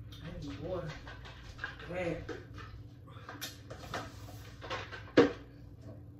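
Soft, unworded voice sounds during the first two seconds, a few light clicks, then a single sharp knock about five seconds in, the loudest sound, as a drink cup is set down on the tabletop.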